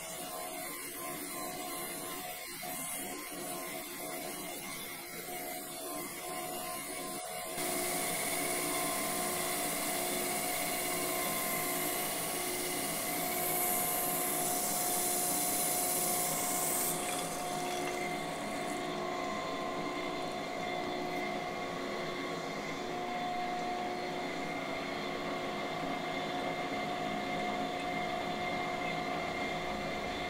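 A camshaft grinder running steadily with coolant, its wheel finish-grinding a main bearing journal of a Viper V10 camshaft. A steady machine hum, with a louder grinding hiss that comes in about seven seconds in and eases off again in the second half.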